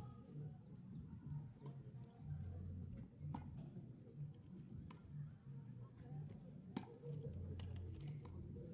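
Tennis balls being struck and bouncing on a grass court: a few sharp knocks a second or more apart, the clearest about three and a half and seven seconds in, over quiet outdoor background.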